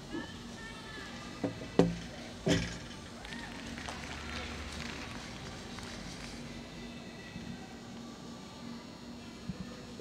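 A gymnast's feet landing on a balance beam: a light knock followed by two sharp thuds in quick succession about two seconds in, the first thud loudest. Underneath is the low murmur of an arena with faint music.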